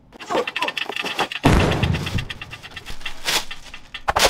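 Cardboard box and packaging being torn open and handled: rapid crinkling and rustling of plastic wrap and cardboard, with a louder dull thud and crackle about a second and a half in.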